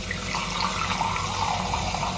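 Kitchen tap running steadily, a stream of water pouring into a bowl.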